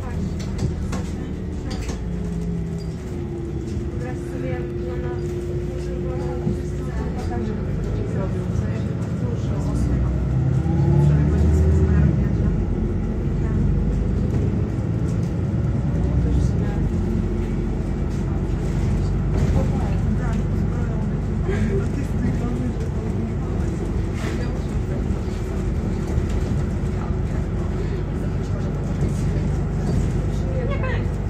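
City bus heard from inside the passenger cabin while driving: a steady engine and road rumble with a whine that climbs in pitch as the bus speeds up, loudest about eleven seconds in.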